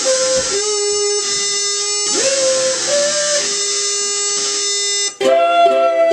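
Live ukulele music with long held notes, one sliding up in pitch about two seconds in. About five seconds in it breaks off briefly and comes back with several notes sounding together.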